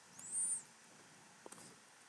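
Stylus dragged across a tablet screen while a curve is drawn, giving one short high squeak that rises and falls, followed by a faint tap of the pen about a second and a half in.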